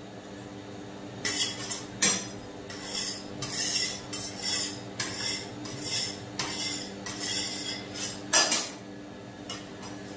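Metal spatula scraping across the stainless-steel cold plate of a rolled ice cream machine in repeated short strokes, one or two a second, starting about a second in, with the sharpest scrape near the end. A steady low hum runs underneath.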